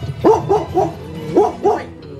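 Cartoon creatures yipping in short dog-like barks over background music: four quick yips, then two more about a second and a half in.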